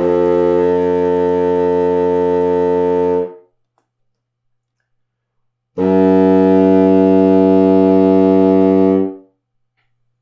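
Contrabassoon playing two long, low sustained notes, each about three seconds with a pause between. They are quarter-tone pitches between F2 and G2, the second slightly louder.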